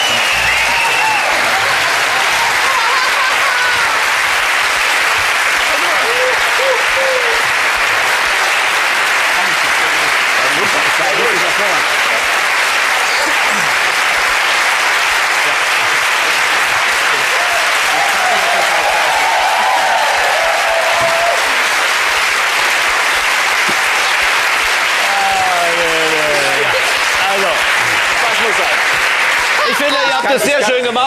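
Large studio audience applauding steadily for the whole stretch, with a few voices calling out above the clapping.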